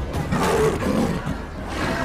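Leopard snarling while attacking a man, in two harsh bursts: one about half a second in and one near the end.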